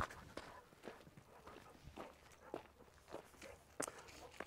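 Faint footsteps of a man walking on hard ground: a few short, irregularly spaced steps.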